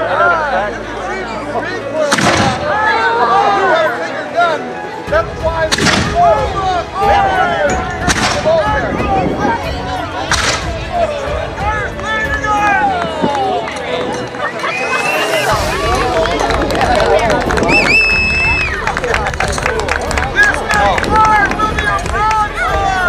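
Four black-powder cannon shots from small reenactment cannons, the first about two seconds in and the rest two to four seconds apart, over the chatter of a crowd.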